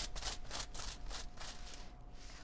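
Tint brush stroking lightener through a section of hair laid on foil: a soft, rhythmic scratchy rasp of bristles over hair and foil, about four to five strokes a second.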